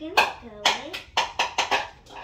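Excited children's voices mixed with several sharp hand claps.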